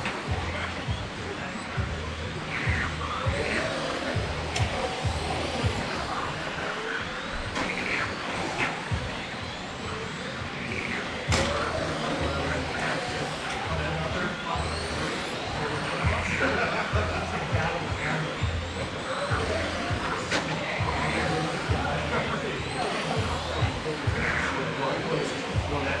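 Electric radio-controlled touring cars racing around an indoor track, their motors whining in repeated rising and falling sweeps as they speed up and slow down through the corners. There is a steady low hum underneath and two sharp knocks.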